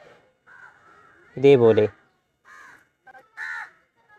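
Crows cawing: a few short, separate calls, the loudest about one and a half seconds in.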